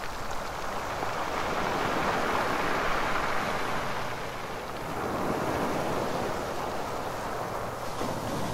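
Small waves washing onto a rocky, shallow shore: a steady rush of water that swells twice, about three seconds apart.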